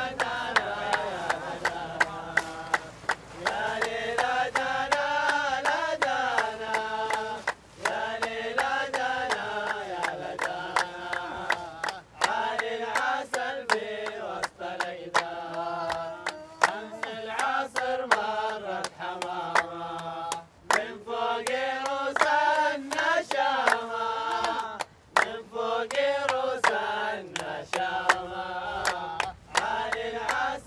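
A chorus singing a Saudi coastal sea chant in maqam Hijaz, with hand claps keeping a steady beat at about 82 beats a minute.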